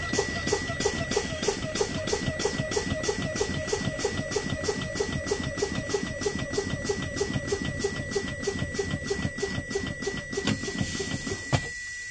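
Truck low-air warning buzzer beeping rapidly, about four beeps a second, as the air brake pressure is fanned down below about 60 PSI. The beeping stops about ten seconds in and gives way to a brief hiss.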